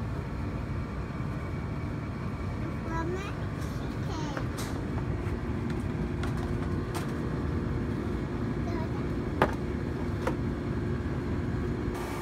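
Steady low outdoor rumble, with a small child's brief vocal sounds about three and four and a half seconds in and a sharp click about nine and a half seconds in.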